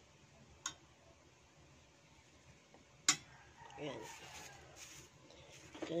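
A metal ladle knocks sharply against cookware twice while stew is served: a light click, then a louder one about two and a half seconds later.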